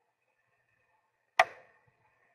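A single sharp click about a second and a half in, with a short ringing tail, against very quiet room tone.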